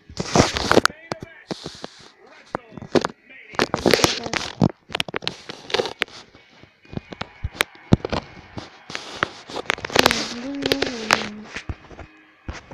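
Phone microphone being handled and rubbed against bedding as the camera is moved about: loud, irregular crackling scrapes and knocks, with a voice underneath.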